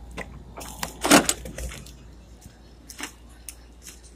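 A few knocks and clicks, the loudest about a second in, from a door being opened and shut and the phone being handled, over a steady low rumble.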